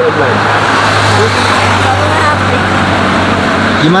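Road traffic close by: a motor vehicle running with a steady low engine hum under a wash of road noise, easing off near the end.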